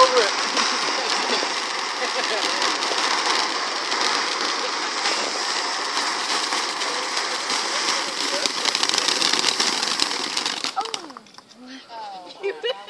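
Ground fountain firework spraying sparks with a steady hiss and dense crackling, which dies away about eleven seconds in.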